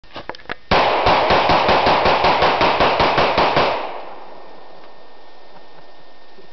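A gun fired in a rapid string, about six shots a second for some three seconds, the last report dying away in the woods.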